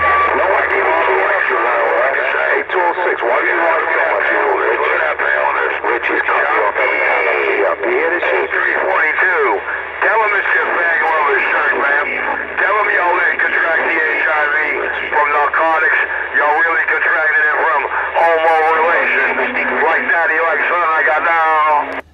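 Voices coming over a CB radio's speaker: thin, narrow-band speech from another station that runs almost without a break, with a steady low hum underneath.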